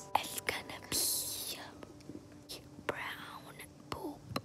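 A girl whispering a phrase: breathy, unvoiced hissing syllables. The loudest comes about a second in and another near three seconds, with a few soft clicks between.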